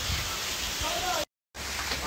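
Steady hiss of rain falling, with a faint voice briefly about a second in. The sound drops out completely for a moment at an edit cut, then the hiss returns with a low hum underneath.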